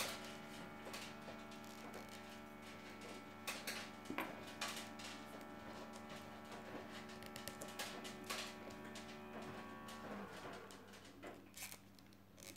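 Automatic cat feeder running while it dispenses dry food: a faint steady hum that stops about ten seconds in. A few light clicks come from paper weaving tubes being handled.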